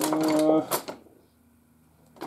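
A man's voice holding one drawn-out syllable for about a second, then near silence.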